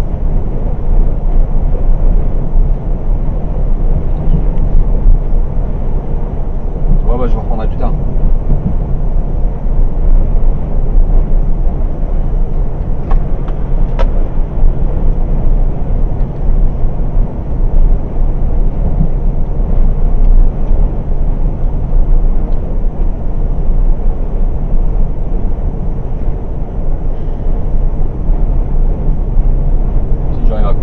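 Steady low drone of a MAN TGX semi truck's diesel engine and tyres, heard from inside the cab while cruising on a motorway.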